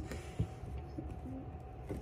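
Quiet indoor room tone with a steady faint hum, a single soft click about half a second in, and a brief low note a little after one second.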